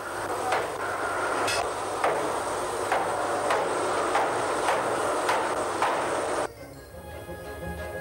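Sledgehammers striking hot steel as a boiler patch is worked by hand, a blow about every half second over a steady workshop din. The noise cuts off suddenly about six and a half seconds in, and music with sustained tones takes over.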